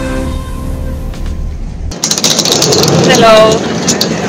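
Background electronic music on a held chord cuts off abruptly about halfway through. Outdoor ambience at a ferry pier follows, with a woman's voice, and a short voiced sound near the end.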